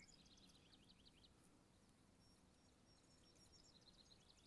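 Near silence outdoors, with faint bird chirps in the first second and again near the end.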